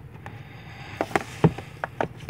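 Plastic Blu-ray cases clacking against each other as one is slid back into a row on the shelf and the next is reached for: a few sharp clicks in the second half, the loudest with a dull knock about one and a half seconds in.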